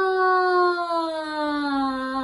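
A woman singing one long held "ah" that slides slowly down in pitch without breaks. It is the falling half of a vocal slide warm-up.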